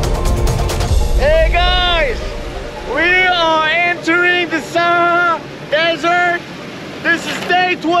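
A low rumble in the first second, then a man's wordless excited yells and whoops, one after another, each held and arching up and down in pitch.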